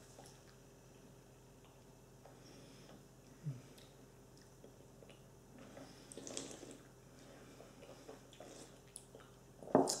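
Faint wet mouth sounds as a sip of whisky is held, worked around the mouth and swallowed, with a brief low throat sound about three and a half seconds in.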